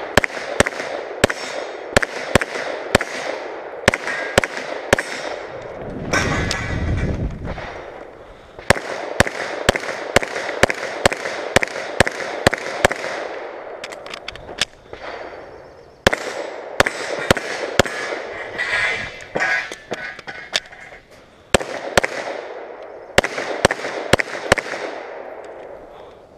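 Glock 34 9mm pistol fired in quick strings of sharp shots, each with a short echo, broken by brief pauses. One pause falls about halfway through, while the magazine is changed.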